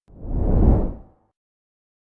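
Whoosh sound effect from an animated subscribe-and-like end screen: a single rush of noise that swells and fades away within about a second.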